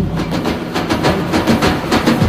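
Live Middle Eastern ensemble music carried by hand percussion: large frame drums and darbukas strike a brisk, steady rhythm, with pitched instruments sounding beneath and no voice.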